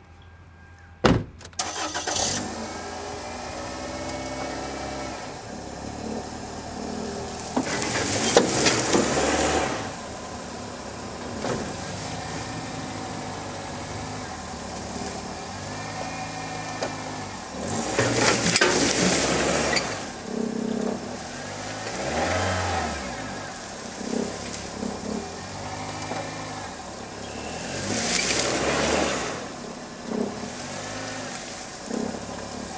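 A car door shuts about a second in, then a Toyota sedan's engine starts and runs while towing a heavy load on a strap. Three times, about ten seconds apart, it revs up hard in a loud surge as it strains to drag the load out of the brush, and drops back to lower revs between surges.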